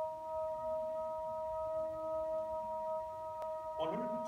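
Three steady, pure bell-like tones held together as a sustained chord, unchanging throughout. A voice starts speaking over it just before the end.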